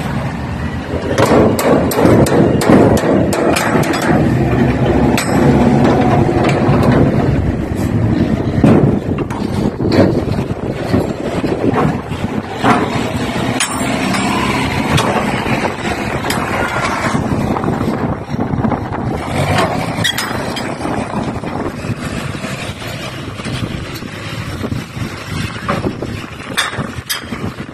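A large vehicle's engine running steadily, overlaid with repeated metallic clanks and knocks from a steel shipping container's door locking bars and handles being worked by hand. The engine hum is strongest in the first two-thirds and eases toward the end.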